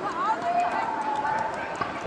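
Voices of people around the track talking and calling out over outdoor background noise, with no clear words.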